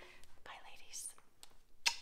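A woman's breathy, whispery vocal sounds without clear words, then a short, sharp burst near the end, the loudest sound here.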